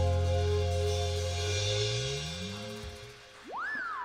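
A live band's final chord ringing out and fading away after the song's last hit, with the bass guitar sliding upward in pitch as it dies. Near the end a single high tone glides up sharply and then slowly falls.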